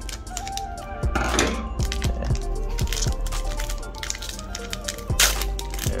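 Background music with a steady beat, over scissors snipping through a foil booster-pack wrapper, with the loudest cuts about a second in and again near the end.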